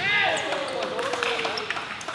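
Players' voices in an indoor sports hall just after a made three-pointer: short shouts, then one long, slightly falling call. A basketball bounces on the court floor with a few short knocks.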